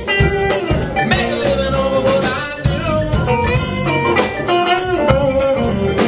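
A live band playing a rock song with a country lean: electric guitars, pedal steel guitar, bass, keyboard and a drum kit with steady cymbal strokes.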